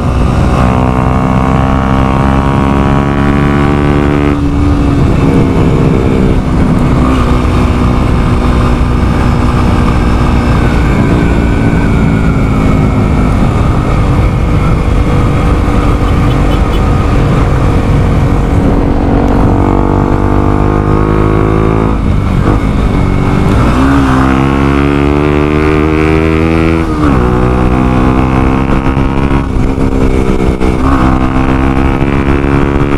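Motorcycle engine pulling hard, its pitch rising and then dropping at a gear change about four seconds in. Through the middle there is steady wind and road rush on the microphone at speed. Near the end come two more rising pulls, each cut short by a shift.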